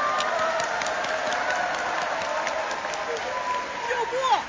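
A live theatre audience applauding, a steady patter of many hands. A man's sung note trails off at the start, and he takes up another held note near the end.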